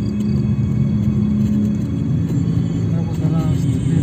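Car driving along a road, heard from inside the cabin as a steady low rumble, with music playing over it.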